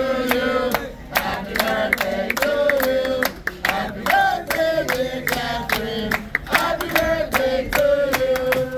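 A group of restaurant servers singing a celebration song together while clapping a steady beat.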